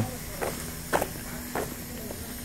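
Footsteps of a person walking on pavement: three short steps about half a second apart.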